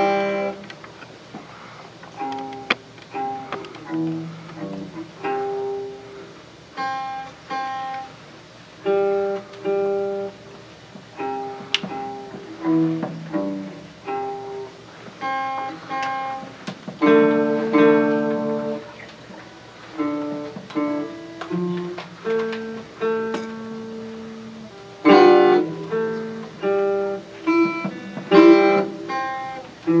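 Small-bodied acoustic guitar played solo, picking a single-note melody in short phrases, with a few louder strummed chords standing out.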